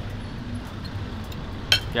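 A single sharp clink of tableware at the table, a fork knocking a plate, near the end, over a steady low background hum.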